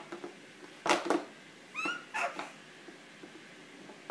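A hard plastic bowl knocks sharply on a high-chair tray about a second in, followed around two seconds in by two short, high baby squeals that slide in pitch.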